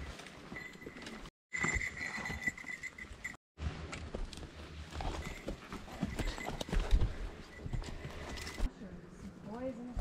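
Footsteps crunching and crackling through dry twigs and brush, with branches brushing and snapping as hikers with trekking poles climb a steep, overgrown forest slope. The sound breaks off abruptly twice.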